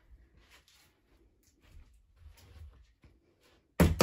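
Quiet room with a few faint scuffs, then a sudden loud thump near the end.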